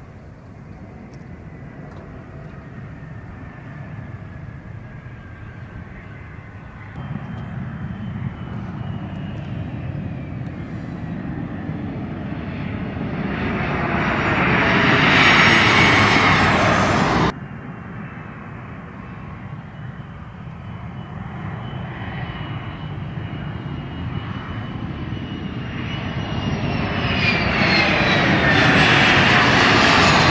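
Jet engines of an A-10 Thunderbolt II running with a high turbine whine, growing louder as the aircraft rolls along the strip and passes, the whine falling in pitch. The sound breaks off abruptly about two-thirds of the way through, then a second pass builds up and is loudest near the end, its whine again dropping in pitch.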